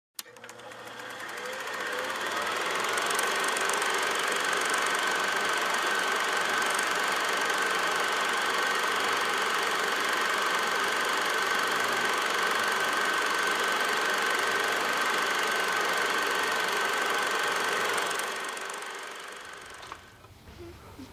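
Steady mechanical whirring with one steady high tone running through it. It fades in over the first two seconds and fades out near the end.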